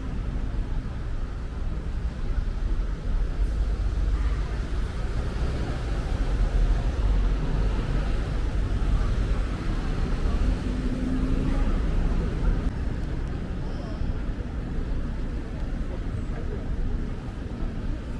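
City road traffic: buses and cars passing at an intersection, a steady low engine and tyre rumble that swells in the middle.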